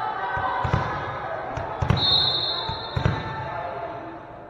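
A volleyball bounced three times on a hardwood gym floor, about a second apart, as the server readies to serve, over a steady murmur of crowd voices in the gym. Just after the second bounce a referee's whistle sounds one long high note.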